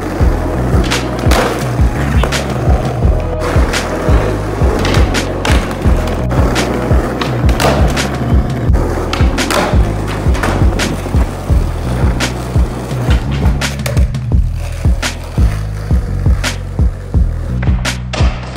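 Skateboard wheels rolling on rough asphalt with sharp clacks of the board, over a backing music track with a heavy bass beat. The rolling noise thins out near the end.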